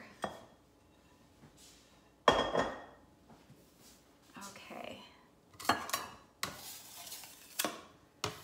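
A bowl and kitchen utensils being moved and set down on a granite countertop. There is one loud knock with a short ring about two seconds in, then a few lighter clunks and a scraping clatter near the end.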